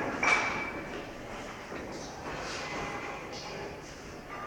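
Scissors snipping through cloth, with indistinct voices in the room.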